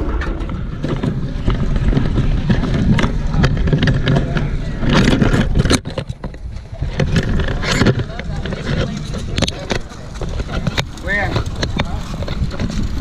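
Handling noise from a small action camera being taken down off a chain-link fence and carried: close rubbing and a low rumble on the microphone, with a run of sharp knocks and clicks about halfway through. Voices are faintly audible in the background.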